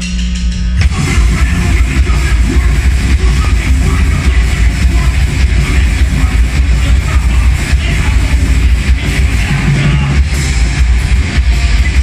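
Live heavy rock band (distorted electric guitar, electric bass and drum kit) kicking into a song about a second in and then playing loud and steady.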